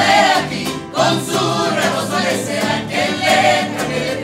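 Mariachi ensemble singing together in chorus, accompanied by violins and guitars.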